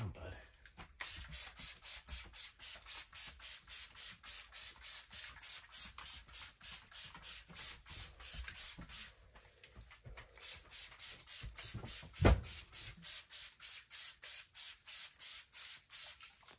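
Sponge scrubbing the inside of a clear plastic storage tub in rapid, rhythmic rubbing strokes, about four a second, with a short pause about nine seconds in. A single loud knock comes about three-quarters of the way through.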